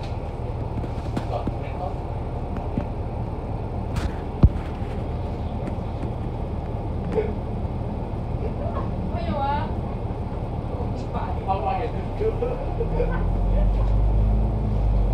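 Diesel engine of an SMRT MAN A95 Euro 5 double-decker bus, heard from the upper deck, idling with a steady low rumble; about a second before the end it grows louder and fuller as the bus pulls away. A single sharp click about four seconds in.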